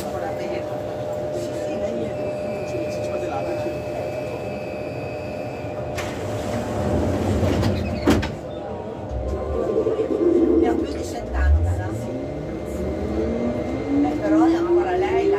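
Rubber-tyred VAL driverless metro train idling in a tunnel with a steady hum and two sharp clicks, then its traction motors whining steadily upward in pitch as it pulls away near the end.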